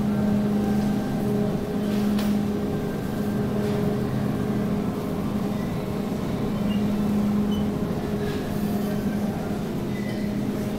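Steady low hum of supermarket refrigerated display cases, mixed with the rumble of a wire shopping cart being pushed along the floor.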